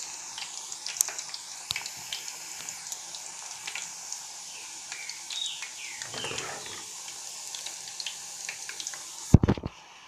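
Green banana slices deep-frying in hot oil in a steel pot: a steady sizzle with scattered crackles and pops. A short loud bump near the end.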